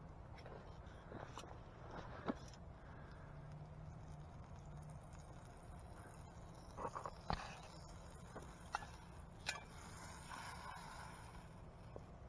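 A wood campfire burning quietly, with a few scattered sharp pops and crackles, the loudest about seven seconds in.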